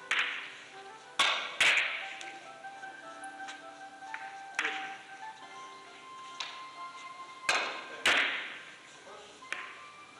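Carom billiard balls in a three-cushion shot: a cue strike, then a string of sharp clicks of ball striking ball and cushion, seven or so spread over the next ten seconds, the loudest pairs about a second and a half and eight seconds in.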